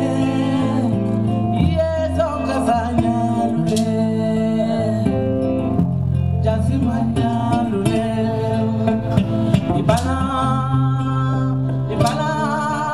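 Live band music: an electric guitar over a low, steady bass line, with a woman singing.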